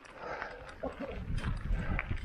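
Mountain bike rattling and knocking as it rides over a rough, stony dirt track, with low rumbling thumps that grow stronger in the second half.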